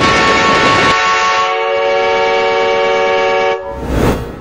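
Train sound effect: the rushing rumble of an approaching train, then a train whistle blown as one long, steady chord of several tones for about two and a half seconds. It cuts off, and a rush of noise swells near the end as the train passes.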